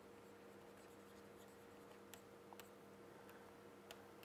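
Near silence: a few faint ticks and scratches of a stylus writing on a tablet, over a faint steady hum.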